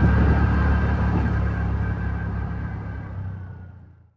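TVS Ntorq 125 scooter's single-cylinder engine running at a steady low cruising speed, with road and wind noise, fading out over the last couple of seconds.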